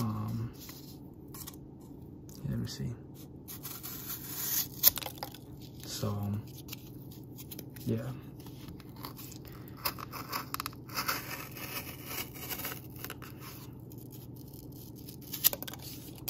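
Folding-knife blade slicing through cardboard, with several bouts of scratchy tearing and scraping strokes and a sharp tick about five seconds in.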